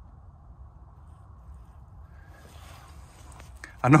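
Faint steady background hiss, thickening for the last second or two with a few faint ticks, then a man's voice right at the end.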